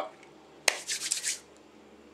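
Hands handling the tackle box's packaging: one sharp click about two-thirds of a second in, followed by a brief rustle.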